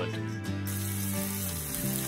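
Background music with a steady low bass line; about half a second in, the sizzle of soy rouladen frying in hot oil in a pan joins it.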